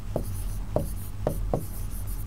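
White chalk writing on a green chalkboard: a string of short taps and scratches, about two strokes a second, as letters are formed.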